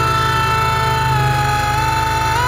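Synthesizer music: a held lead note that glides down in pitch at the start and begins to slide up again near the end, over a steady, pulsing low bass drone.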